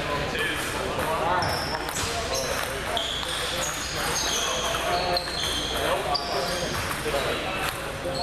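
Table tennis balls clicking off paddles and tables in rallies at several tables, with short high squeaks of sneakers on the wooden floor. Background chatter runs underneath.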